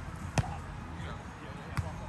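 A volleyball struck twice by players' hands or forearms in a beach volleyball rally: two sharp slaps about a second and a half apart, over a steady low rumble.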